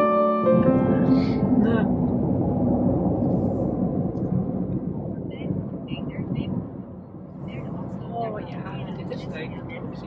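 Piano music that stops about half a second in, then the steady rumble of road noise inside a moving car, with faint voices near the end.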